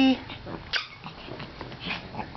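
Small long-haired Pekingese dogs close by making faint, brief noises, the clearest a short burst under a second in and another near the end.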